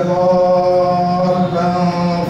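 A man reciting the Quran in a melodic chant into a handheld microphone, holding long, steady notes. There is a short break about one and a half seconds in, then the next held note.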